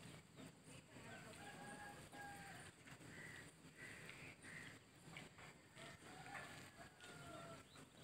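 Faint rooster crowing: two long drawn-out crows, one about a second in and one near the end, with a few short higher bird notes between them.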